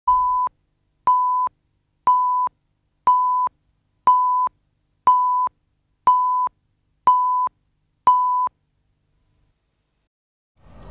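Countdown leader beeps: nine identical short electronic tones at one steady pitch, one each second, ticking off the numbers of a broadcast countdown from ten.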